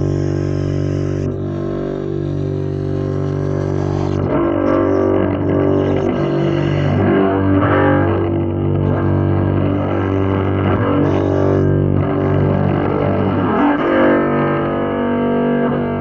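Solo double bass improvisation in an avant-garde style: sustained low, drone-like notes with a dense stack of overtones shifting above them.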